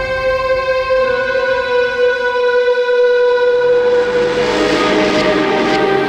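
Suspense background score: a held, droning chord of steady tones, with a swelling wash of sound building about four seconds in and a new lower note entering.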